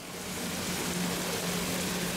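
Heavy rain pouring down in a steady hiss, growing louder over the first half-second, with the low, steady hum of a boat's outboard motor underneath.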